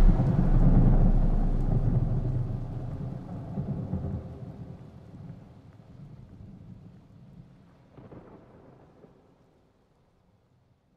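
Thunder rolling and fading away as the song's music stops, with fainter rumbles about four and eight seconds in before it dies out.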